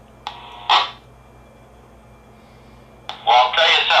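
Baofeng handheld radio receiving: two short bursts of radio noise near the start, then about three seconds in the squelch opens and another operator's voice comes through the radio's speaker, sounding narrow and tinny like a radio.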